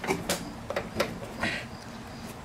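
A few sharp, light clicks and knocks from a lawnmower's plastic rear wheel being handled and turned at its hub.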